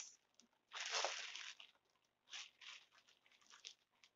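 Clear plastic bag wrapping crinkling as a bagged bundle of yarn balls is handled: one longer rustle about a second in, then several short crinkles.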